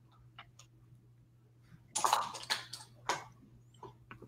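A few short clicks and rustles from a makeup compact and brush being handled, the loudest a cluster about halfway through, over a faint steady hum.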